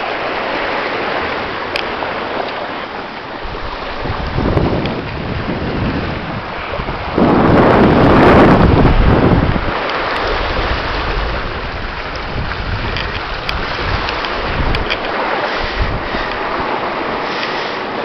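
Strong wind buffeting the microphone over water rushing along the hull of a Ranger 22 sailboat running downwind in a stiff breeze. A louder rush swells about seven seconds in and lasts two or three seconds.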